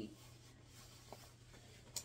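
Faint rustling of a puffer jacket's fabric as it is handled, with one small click about a second in.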